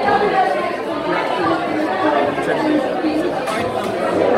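Speech over the chatter of many voices in a busy room.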